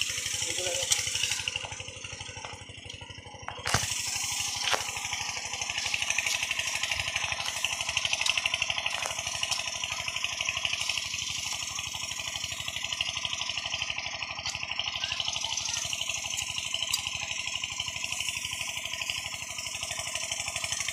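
A motor running steadily with a rapid, even pulsing beat. It drops in level for a moment about two seconds in, with a sharp click just before four seconds.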